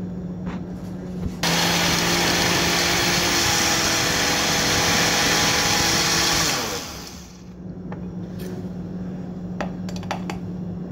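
Countertop blender switched on about a second and a half in, blending strawberries for about five seconds at a steady speed, then spinning down. A few light clicks follow near the end.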